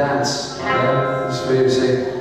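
A man talking into a stage microphone, heard through the PA.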